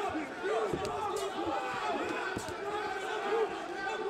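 Raised voices from the fight crowd and corners shouting over one another, with a few sharp thuds of strikes landing.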